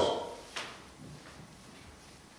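A man's last word dies away in the room, then one sharp click about half a second in and two fainter ticks just after, leaving quiet room tone.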